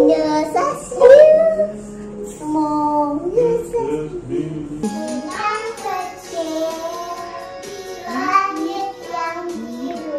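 A young girl singing a children's song. About five seconds in, another young girl sings along to a backing track.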